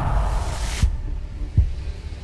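Title-card sound effect: a low rumble with two deep thuds about three-quarters of a second apart. The fading music's upper range cuts off at the first thud, a little under a second in.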